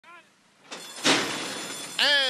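Horse-race starting gate springing open with a loud clang about a second in as the horses break, with the starting bell ringing.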